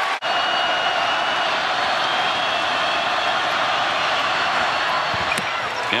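Basketball arena crowd noise: a steady din of many voices during a free throw, with a thin high whistle-like tone in the first couple of seconds. The sound drops out for a moment just after the start.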